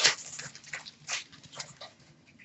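Trading cards being handled and sorted by hand: a string of brief rustles and brushes of card stock sliding against card stock.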